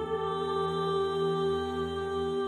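Background music: slow, ambient-style held chords, changing to a new chord right at the start.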